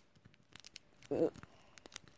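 Faint crinkling and tearing of the plastic wrap on a toy package as it is worked open, heard as a few scattered light clicks, with a short vocal sound about a second in.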